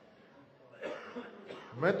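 A pause in a man's lecture: quiet room tone with a brief faint vocal sound about a second in, then his speech resumes near the end.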